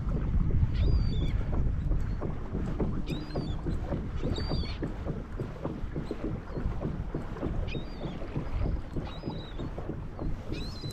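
Small waves lapping and slapping against a kayak's hull in the wind, with short high bird calls about five times.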